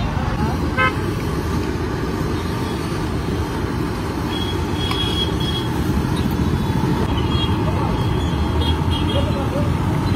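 Steady low rumble of roadside traffic, with a short vehicle horn toot about a second in.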